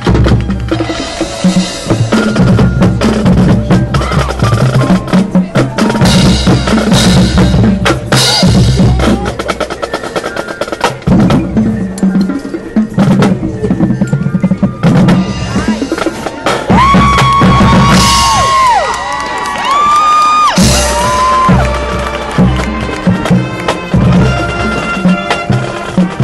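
A high school marching band playing live outdoors, led by its percussion: the drumline's snare drums and bass drums play rapid rolls and hits, with the front-pit percussion. About two-thirds of the way through, the band comes in with long held notes that bend in pitch before the drums take over again.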